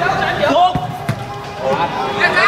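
A football kicked on an artificial-turf pitch: two dull thuds in quick succession about a second in, among players' shouts.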